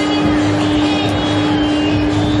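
Swinging pendulum ride running, a loud, steady mechanical hum with one held tone.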